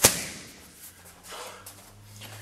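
A single sharp smack of a Muay Thai roundhouse kick landing on a Thai pad, the loudest thing here, fading quickly.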